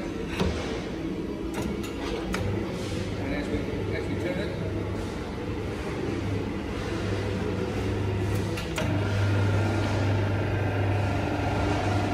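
Electric motor of a 240 V Steelmaster SM-PK10-PWR section roller running its powered bottom rollers as a steel rod is fed through and bent into a curve: a steady low hum that starts a couple of seconds in and gets louder about nine seconds in, with a few sharp clicks and knocks.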